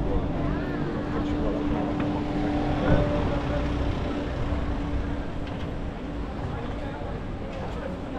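Busy city street with pedestrians' voices and a steady mechanical hum that fades about six seconds in, over a low rumble, with one brief knock about three seconds in.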